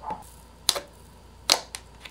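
Fingers poking and pressing into slime, making sharp wet clicking pops, a few in two seconds with the loudest about one and a half seconds in.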